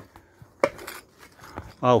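Two sharp clicks about half a second apart, then a man's voice begins near the end.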